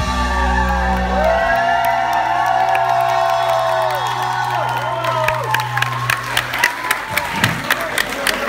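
A rock band's final chord rings out as one long held low note, with higher pitches gliding and bending over it while the crowd cheers. About five seconds in the chord fades and the audience starts clapping.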